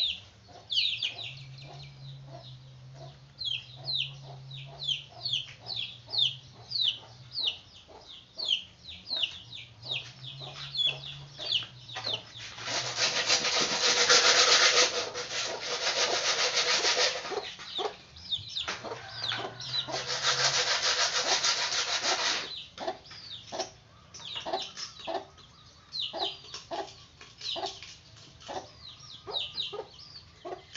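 Guinea pigs chewing fresh grass: a rapid run of small crunches, over many short, high chirps that fall in pitch. Two spells of loud hissing noise, each several seconds long, fall in the middle.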